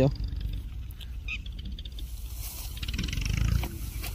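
Dry leafy branches rustling and crackling lightly as they are handled, loudest a little past the middle, over a steady low rumble on the microphone.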